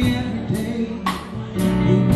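Live band playing a slow R&B song: drum kit with a cymbal or snare hit about twice a second, over guitar, keyboard and bass.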